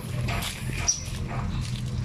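Two cats in a face-off: a low, steady growl with short, wavering yowls over it.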